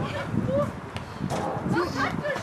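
Spectators' voices calling out beside a football pitch, with brief untranscribed shouts over a steady outdoor background.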